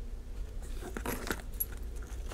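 Paper sticker sheets being handled and swapped on a tabletop: faint rustling with a few light clicks and taps around the middle.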